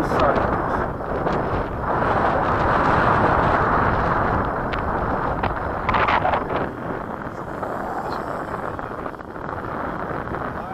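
Strong wind buffeting the microphone, a loud, uneven rush with a sharp gust about six seconds in, easing somewhat after that.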